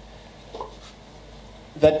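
A pause in a man's spoken lecture: steady low room hum with a faint brief sound about half a second in, then his voice resumes near the end.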